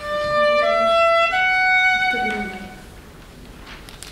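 A violin playing three slow rising notes, each a single bowed tone, the last held longest and fading away.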